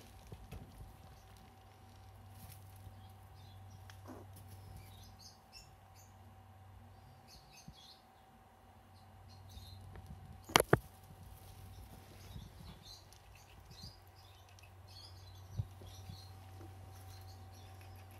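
Pet squirrel handling hazelnuts: faint scattered small clicks and scratches, with a sharp double click about ten and a half seconds in.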